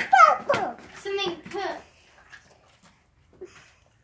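A child's voice talking for about two seconds, then quiet with a few faint small clicks.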